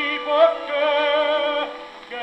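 A 1926 78 rpm record of a Neapolitan song for tenor and orchestra, played on an HMV 163 gramophone. Held notes with wide vibrato sound through the record's narrow, old-recording tone, and fade briefly near the end.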